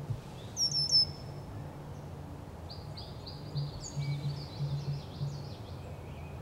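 Songbirds calling. Three sharp, quickly falling chirps come about half a second in and are the loudest sound. In the second half a run of rapid falling whistled notes follows.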